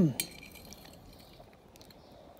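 A man's short "mm" of tasting, then a metal fork clinking once sharply against a plate, followed by a few fainter taps of the fork on the plate.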